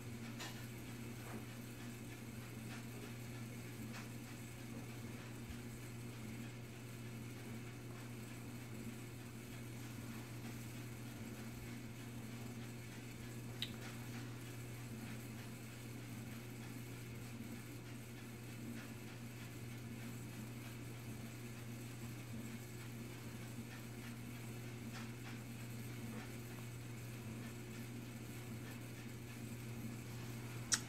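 Quiet room tone: a steady low hum, with one faint click about halfway through.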